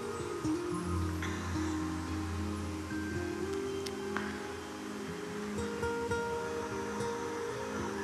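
Slow, soft background music of long held notes, with no speech.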